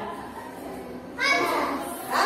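Young children's voices in a classroom, faint at first, with a louder voice starting a little over a second in.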